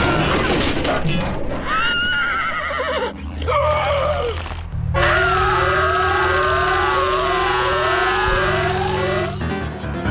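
A cartoon dog's high-pitched, wavering screams over cartoon music and sound effects. About five seconds in, a long held scream starts over a steady low note and a rising sweep that repeats about every two-thirds of a second, and all of it stops shortly before the end.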